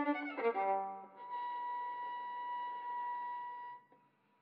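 Solo violin: a quick run of short notes, then a single high note held steadily for nearly three seconds before it stops cleanly near the end.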